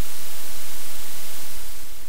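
Loud, steady static hiss, fading away near the end.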